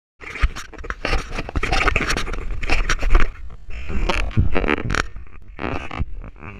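Close, loud scraping and knocking of handling noise on a hand-held action camera as a person moves and jumps, busiest in the first three seconds, with a few short vocal sounds in the second half.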